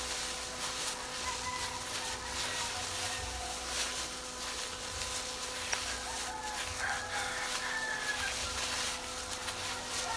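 Thin disposable plastic gloves crinkling and rustling against hair as hair dye is worked through it: a steady rustle with small crackles.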